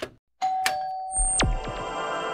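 Short electronic logo jingle: a click, then a held chime-like tone, a high tone that swoops sharply down, and chime chords ringing on.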